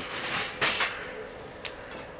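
Two young brown bears wrestling at close range: fur rustling and scuffling, with a few soft knocks of paws and claws on the concrete floor.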